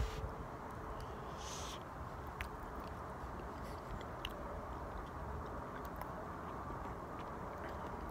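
A man chewing a mouthful of soft, runny apple dump cake, with a few faint mouth clicks, over steady outdoor background noise.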